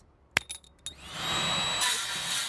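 Handheld electric circular saw spinning up about a second in and then running with a steady high whine, as it is pushed into a plywood board. A sharp click comes just before it starts.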